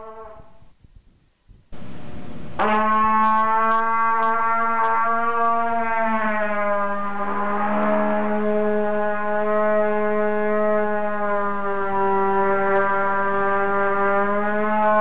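A trumpet filled with sulfur hexafluoride plays one long, steady low note of about 193 Hz, starting about two and a half seconds in; the heavy gas lowers its pitch below the trumpet's normal note. The pitch sags slightly about six seconds in, then holds.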